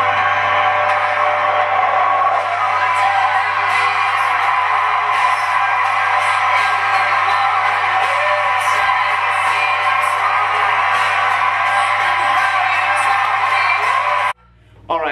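Loud, steady music playing over a theatre audience cheering, whooping and applauding.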